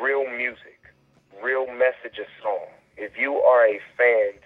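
A man talking over a telephone line, his voice thin and narrow in range.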